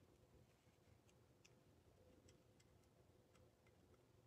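Near silence: quiet room tone with a few faint, irregular ticks.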